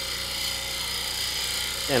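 Wood lathe spinning a goncalo alves blank while a spindle gouge takes a light cut on its face: a steady whirring hiss of the motor and the cut.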